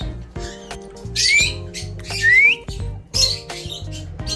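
Alexandrine parakeet giving three short harsh squawks about a second apart, two of them rising in pitch, over background music.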